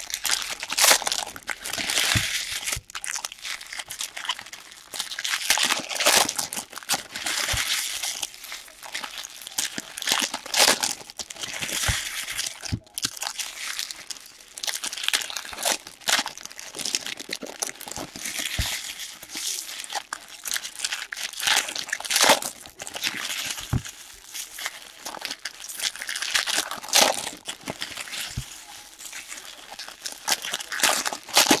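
Foil trading-card pack wrappers being torn open and crumpled by hand, in irregular bursts of crinkling, with a few short knocks.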